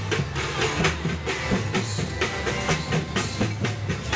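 Samba drum troupe playing on the march, a steady, fast rhythm of bass and snare drum strikes.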